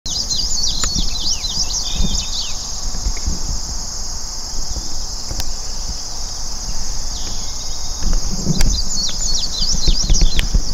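Steady high-pitched insect chorus of a summer field, with flurries of quick chirping bird calls in the first couple of seconds and again near the end. An uneven low rumble runs underneath.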